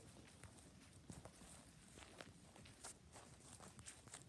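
Near silence with faint, uneven footsteps on a grass lawn, soft steps roughly every half second.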